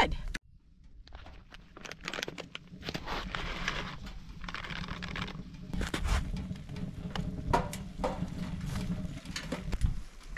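Cubed steak and rice sizzling in a cast-iron Dutch oven on a wood stove while being stirred with a metal spoon: a steady frying hiss with scattered clicks and scrapes.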